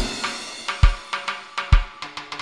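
Opening drums of a dub reggae track: a cymbal crash on the downbeat, then a steady groove of kick drum about once a second, with snare and quick hi-hat ticks between, and a faint held chord underneath.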